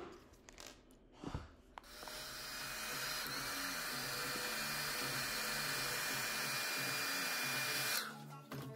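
Handheld hair dryer switched on about two seconds in, then blowing steadily.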